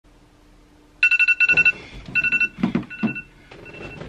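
Electronic alarm tone starting about a second in: a fast-pulsing beep in a few short bursts, the last one weaker. Bedding rustles under it as someone stirs in bed.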